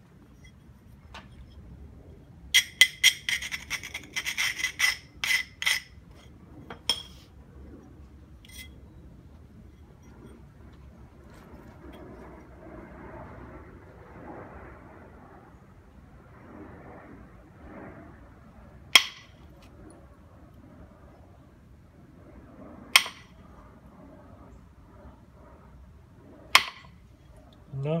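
Flintknapping a stone biface: a quick run of about a dozen sharp clinks of tool on stone, then a soft rubbing as the edge is worked, then three single sharp knocks about four seconds apart as an antler billet strikes the edge. The knocks are not taking off the flakes wanted.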